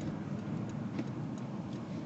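Car on the move: a steady low engine and road rumble, with a faint tick about a second in.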